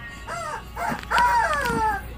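Three high-pitched, voice-like calls, each falling in pitch; the third is the loudest and is held about a second, over background music.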